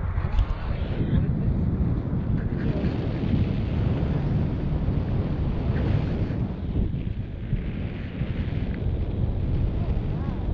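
Wind buffeting the microphone of a camera held out on a pole from a tandem paraglider in flight: a steady, loud, low rumbling rush of airflow.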